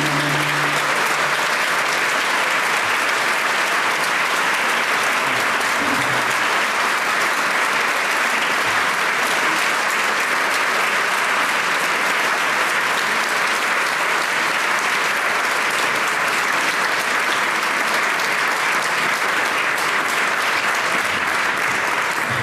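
Concert audience applauding, a dense and steady clapping that goes on throughout. The last held note of the song dies away in the first second.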